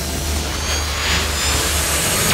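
Electronic intro sound design: a rushing, whoosh-like noise swell over a deep rumble, building slowly, with faint high tones.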